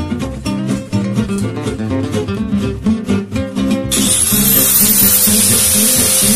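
Acoustic guitar music plays. About four seconds in, an angle grinder switches on: a loud hissing noise with a high whine that climbs quickly as the disc spins up, then holds steady over the music.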